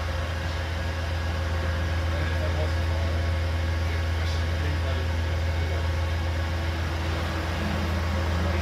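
A bus's engine running with a steady low drone, heard from inside the passenger deck over a hiss of road and cabin noise.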